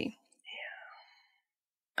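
A brief, faint, breathy vocal murmur from a woman, falling in pitch, just after the end of a spoken phrase.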